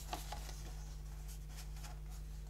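Faint rustling and sliding of paper and card stock as it is handled and laid on a pile of papers, over a steady low hum.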